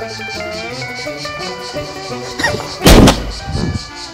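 A large inflatable exercise ball bursting with a single loud bang about three seconds in.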